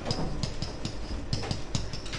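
Irregular light clicks and taps of a stylus on an interactive whiteboard as it is written on, over a steady low hum.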